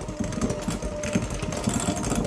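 KitchenAid electric hand mixer running, its beaters whipping a block of softened cream cheese in a glass bowl: a steady motor whine with a fast, irregular clatter of the beaters.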